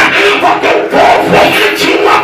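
A man shouting fervently into a handheld microphone, his voice loud and unbroken.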